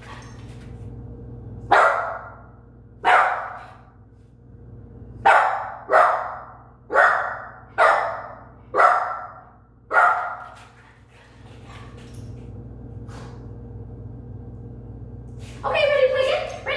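A puppy barking, about eight short barks roughly a second apart over the first ten seconds, then falling quiet. It is the kind of barking a puppy does to win back attention after play has been withdrawn for biting.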